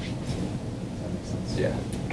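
A steady, low background rumble with a short spoken "yeah" near the end.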